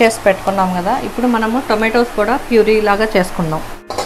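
A woman's voice talking, over a steady faint hiss.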